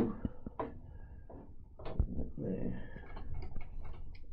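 Light clicks, then a sharp knock about two seconds in, from hands handling the mechanism of an old reel-to-reel tape recorder, with quiet talk under it. The deck is not running.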